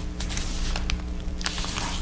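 Faint rustles and light clicks of hands handling crepe-paper flowers on an LED light wreath, over a steady low hum.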